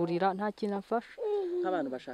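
A woman's voice speaking, ending on a long drawn-out syllable that falls in pitch.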